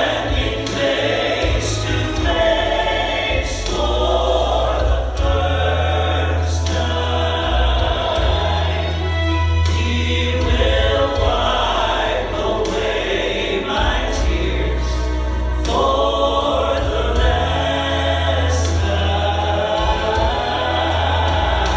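Gospel trio of two women and a man singing together into microphones over a musical accompaniment with a strong bass line.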